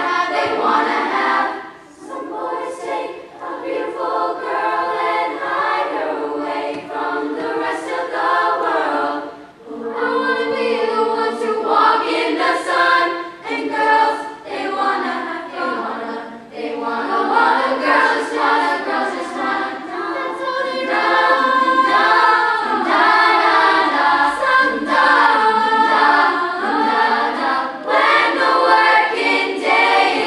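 A large girls' choir singing unaccompanied, many young voices together, with short breaks about two seconds and about nine and a half seconds in.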